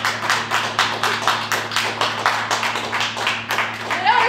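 Applause from a small audience: many separate hand claps, uneven in time, over a steady low hum.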